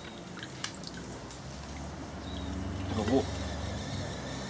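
Water splashing and dripping as a fluorescent tube is lifted out of a bucket of water, with small drips and splashes in the first second.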